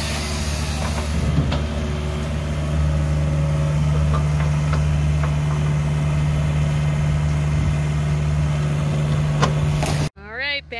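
Takeuchi mini excavator's diesel engine running steadily while it digs. The engine gets a little louder about three seconds in, and a few light knocks sound through it.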